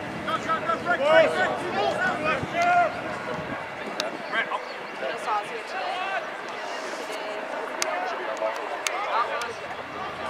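Men shouting calls and encouragement across an open rugby field, too distant to make out the words. A few short, sharp clicks are heard in the second half.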